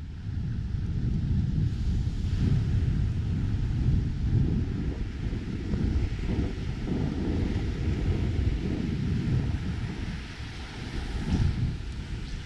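Wind buffeting the camera microphone on an open beach: a loud, gusting rumble, with the wash of surf beneath it.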